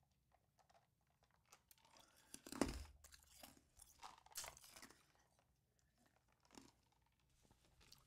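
Faint mouth and swallowing sounds of a person drinking from a can, close to the microphone. A soft knock about two and a half seconds in, then a few light taps and handling noises.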